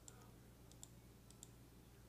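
Faint computer mouse clicks, a few of them in quick pairs, over near-silent room tone.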